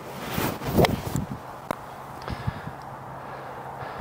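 Titleist T150 steel iron striking a golf ball off fairway turf: one sharp click about a second in, with a rush of noise leading into it. The strike is not quite out of the middle of the face.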